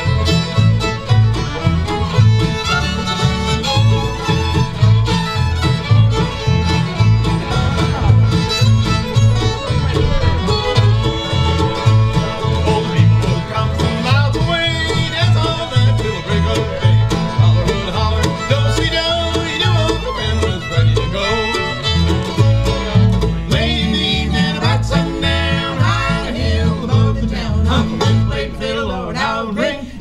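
Acoustic bluegrass band playing: fiddle, banjo, mandolin and guitar over a steady upright-bass beat.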